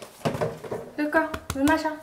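A woman's voice in the second half, short high-pitched utterances, after a few light knocks and rustling.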